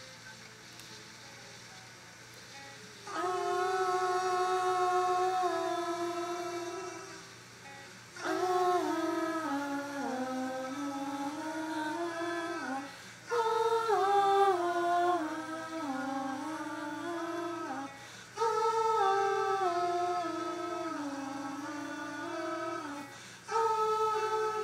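Female voice humming a slow, wordless melody in phrases of about five seconds, each made of held notes that step down in pitch, starting after a quiet first few seconds.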